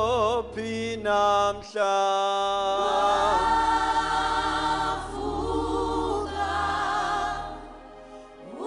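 Gospel worship singing: voices holding long notes with vibrato, the phrases changing every second or two, over a steady low accompanying tone.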